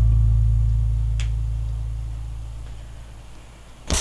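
The final low note of a karaoke backing track, held and fading away slowly. There is a faint click about a second in, and a short loud bump from the camera being handled right at the end.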